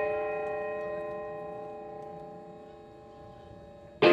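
An electric guitar chord, struck just before, left ringing through the amplifier and fading away slowly.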